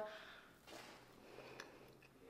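Faint chewing of a soft baked oat bar, with a few soft mouth clicks.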